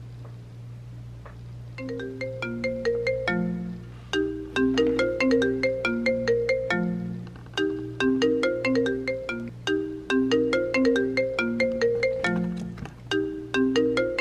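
iPhone ringing with an incoming FaceTime video call: a chiming ringtone melody that starts about two seconds in and repeats phrase after phrase, over a low steady hum.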